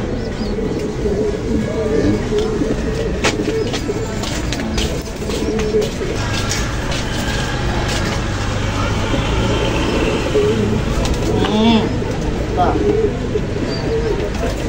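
Many racing pigeons cooing continuously in a loft, a dense, wavering low murmur of calls. Scattered sharp clicks and knocks sound over it.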